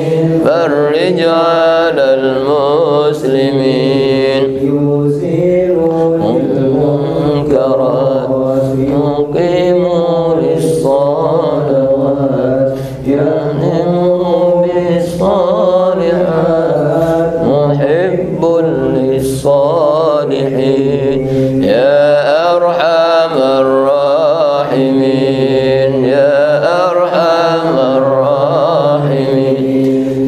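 A man's voice chanting a melodic religious recitation into a microphone: one continuous line of long, wavering held notes that bend up and down, with only brief breaths between phrases.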